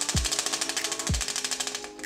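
Split-flap display modules flipping their flaps: a rapid, even clatter of clicks that stops shortly before the end as the digits settle.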